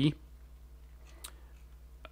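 A single computer mouse click about a second in, over a quiet, steady low hum.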